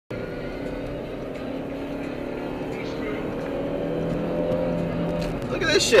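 Car moving at freeway speed, heard inside the cabin: a steady drone of engine and tyre noise with a few held tones that drift slightly lower in pitch, growing a little louder toward the end.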